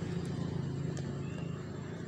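Steady low background hum with a faint click about a second in.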